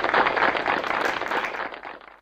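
Audience applauding, a dense patter of many hands clapping that sags a little near the end.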